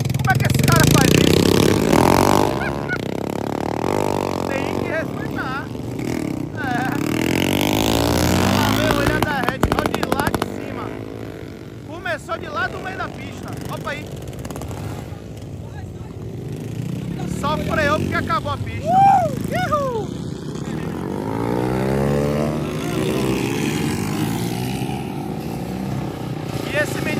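Several small motorcycles revving and passing close by as riders pull wheelies. Engine pitch rises and falls repeatedly as each bike goes past.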